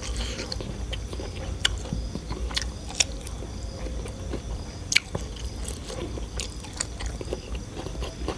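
A person chewing food, with scattered sharp wet clicks and smacks of the mouth.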